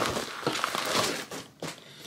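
Crinkling and rustling of a mailing bag as a boxed item is pulled out of it, fading about one and a half seconds in, followed by a short knock.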